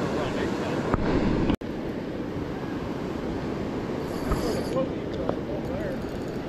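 Steady rush of river water, loud and continuous, with faint voices in the background and a brief sudden gap about a second and a half in.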